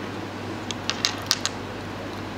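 A few faint, short clicks, about five within under a second, as fishing wire and nylon line are handled while a figure-of-eight knot is tied, over a steady background hum.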